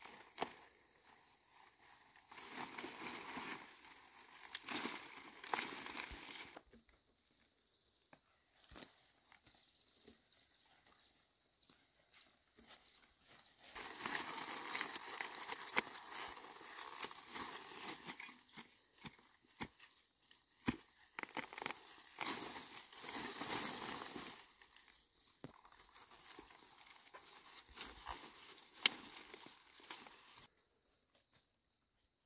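Dry grass and leaves rustling and weeds tearing as clumps are pulled up by the roots by hand, in several bursts of a few seconds each, with scattered sharp clicks between.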